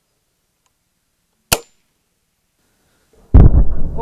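GAT spring air gun firing a cork: a single sharp pop about one and a half seconds in. Near the end a loud, low rushing noise starts and runs into speech.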